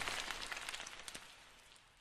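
Dense crackling patter of debris and grit raining down after an explosion, many small ticks fading steadily away over the two seconds.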